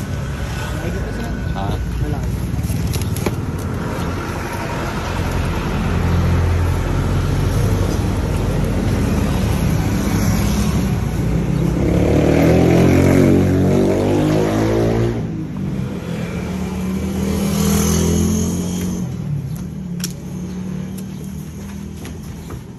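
A motor vehicle engine running with a steady low hum that swells louder in the middle, with people talking over it.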